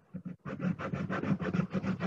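Scratching, crackling noise on a participant's microphone over a video-call audio line. It starts about half a second in as rapid crackles, roughly eight a second.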